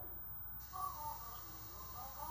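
A high voice-like sound whose pitch wavers up and down, starting about half a second in, over a steady low hum.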